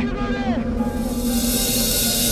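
Background music of a TV drama: a steady low drone under a voice that trails off in the first half second, then a bright hissing swell builds from about a second in.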